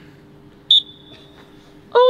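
A short, loud, high-pitched whistle blast about two-thirds of a second in, dying away within half a second, signalling the start of a penalty kick. Near the end a brief loud shout.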